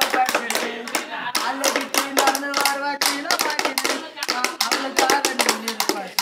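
Sticks beaten in a fast, steady rhythm on cut bamboo tubes, played as hand percussion, with a male voice singing held notes of a gana song over the beat.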